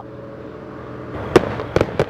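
Fireworks going off: a rush of noise builds from about a second in, with two sharp bangs close together near the end.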